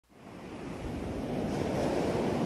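Steady rushing noise that fades in from silence and grows louder, an ambient intro before the song begins.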